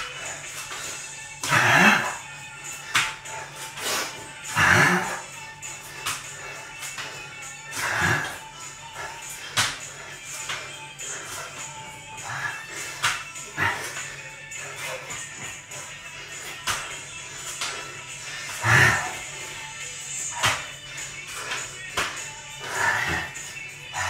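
Background music over a man doing burpees on a tiled floor: hands and feet slap down as he drops and jumps, and there are several loud, hard exhaled breaths, with a longer gap between them in the middle.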